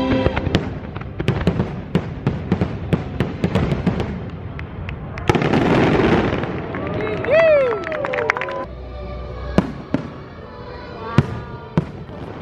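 Aerial fireworks shells bursting in a rapid run of sharp bangs and crackles, with a dense crackling stretch about five seconds in, a few rising-and-falling whistling tones shortly after, and single louder bangs near the end.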